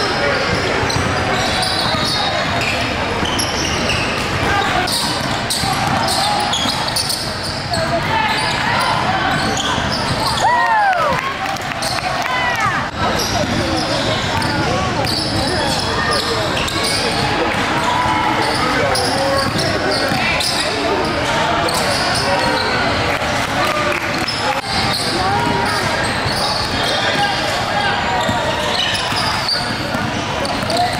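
Basketball game sounds on a hardwood gym floor: the ball bouncing repeatedly, indistinct shouts and chatter from players and spectators, and a few squeaky sneaker glides on the court about eleven seconds in.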